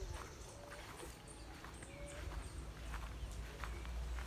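Irregular footfalls on dirt and undergrowth, with a few short chirping calls in the background and a steady low rumble on the microphone.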